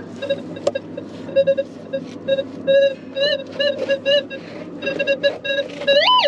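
Metal detector audio sounding as its coil is swung over the ground: a run of short electronic beeps at one mid pitch, some of them warbling up and down about halfway through, the response to a buried metal target.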